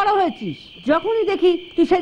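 Dubbed film dialogue: a high-pitched voice speaking, with a short pause about half a second in.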